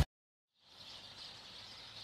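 A half-second of dead silence at the edit, then faint, steady outdoor background noise with a high hiss.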